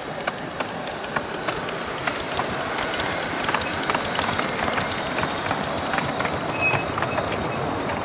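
Miniature live-steam locomotive and its train running past close by: a steady steam hiss with irregular clicks and rattles of the wheels on the track, growing a little louder as it comes nearest.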